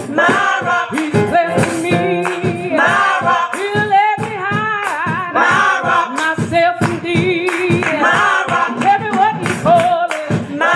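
Gospel praise team singing into microphones, mixed male and female voices with a lead voice over the group.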